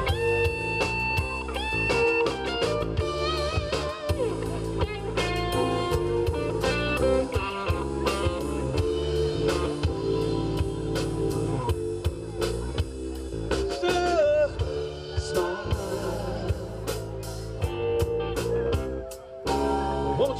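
Live blues-rock band playing, with electric guitar to the fore over drums and keyboard. The music thins out briefly just before the end, then the band comes back in.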